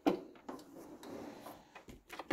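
Metal tool chest drawer pulled open on its slides: a sharp clack as it starts to move, then about a second of rolling slide noise, with a few light clicks near the end.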